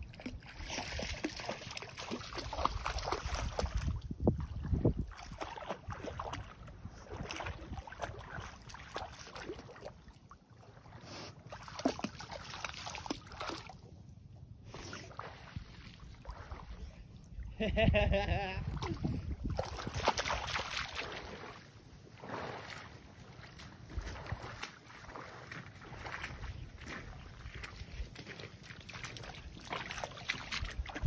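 Shallow canal water sloshing and splashing as a person wades through it working a net, with wind gusting on the microphone. A dog splashes through the water close by near the end.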